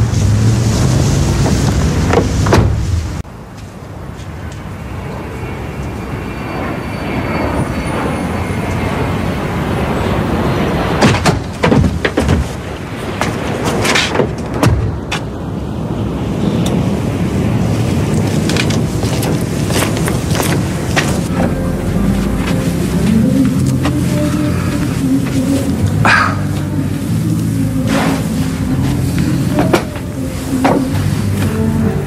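Street background with traffic running, scattered knocks and clicks, and music coming in during the second half.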